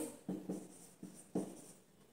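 Marker pen writing on a whiteboard: three short strokes in the first second and a half.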